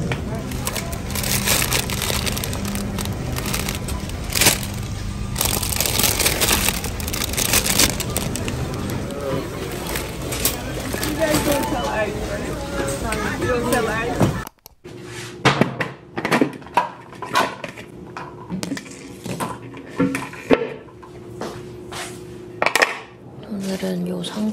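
Background music over busy grocery-store ambience with handling noises. Then, after a sudden cut about two-thirds through, a quieter stretch of short crisp snaps and rustles as leaf lettuce leaves are picked by hand.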